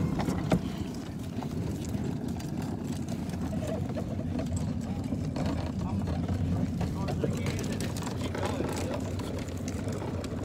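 Hard plastic wheels of a child's push-along ride-on toy car rolling over rough asphalt, a steady low rumble.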